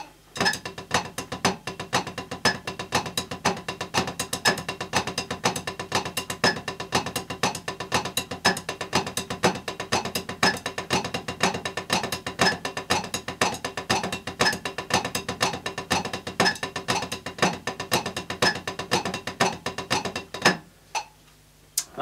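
Wooden drumsticks playing flam paradiddles on a drum practice pad at 120 BPM: rapid, evenly spaced strokes in repeating groups, each opening with a flam, stopping about 20 seconds in. The left hand is playing somewhat sloppily, as the drummer himself judges it.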